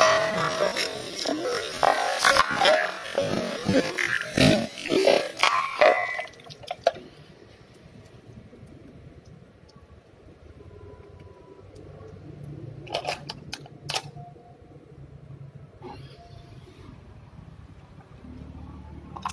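Plastic water bottles, just cut through by a machete stroke, tumbling, clattering and spilling water for about six seconds, followed by a quieter stretch with a couple of sharp knocks.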